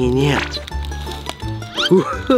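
A man's voice speaking over background music with a steady low bass, with a quick rising vocal exclamation near the end.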